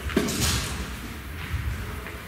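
Soft low thumps and handling noise from objects being picked up and moved at a table, with a short falling sound just after the start.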